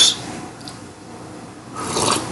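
A man taking a sip from a mug: a short, noisy slurp near the end, after a quiet stretch.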